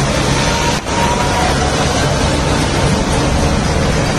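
Diesel tractor engines running as tractors drive past close by, over a steady rush of road and traffic noise.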